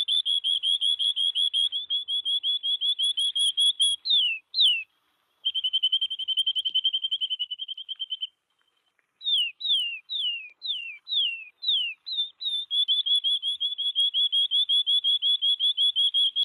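A recorded canary singing: long, rapid trills of short chirping notes. Near the middle, a string of about six falling, swooping whistles breaks up the trills.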